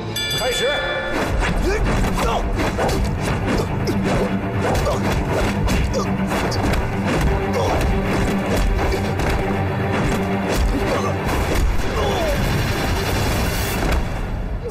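Dramatic fight-scene music under a rapid, continuous run of punch and kick impact effects, with thuds of fighters falling to the floor.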